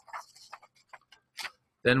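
Sheets of paper being handled at a desk: a handful of faint, scattered clicks and soft rustles. A man starts speaking near the end.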